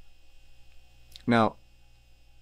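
A faint, low, steady electrical hum.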